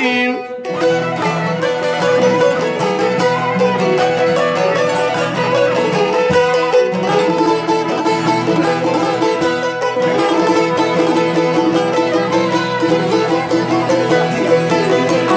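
Albanian folk instrumental music: a two-stringed çifteli strummed in fast, even strokes, with a bowed violin playing the melody over a steady drone note.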